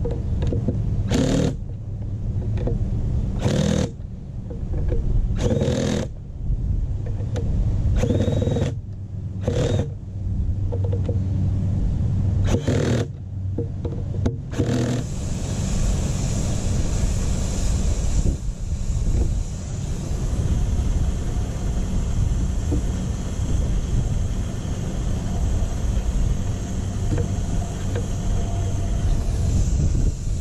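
Porter-Cable cordless drill driving the screws of a pool skimmer faceplate in a series of short runs through the first half, over a steady low hum. After about fifteen seconds the drill stops and a steady rushing noise remains.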